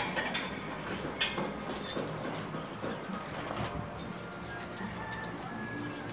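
Outdoor background with faint music and bird calls, and two light clicks about a second apart near the start.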